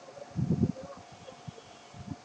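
Muffled low bumps and rustling, strongest about half a second in, with a few softer knocks after, over a faint steady hum.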